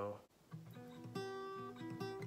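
Fender steel-string acoustic guitar fingerpicked, an E minor barre chord picked out as single notes: the bass note on the A string, then higher strings, about four notes one after another, each left ringing.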